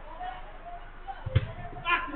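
A single sharp thump of a football being kicked about a second and a half in, among players' distant shouts.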